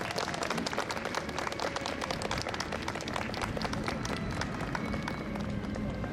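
Audience applauding at the end of a brass band number, a dense run of hand claps that thins a little near the end.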